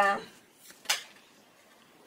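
The end of a spoken "yeah", then a single sharp click about a second in: a tarot card being handled, snapped against the deck as it is shuffled or drawn.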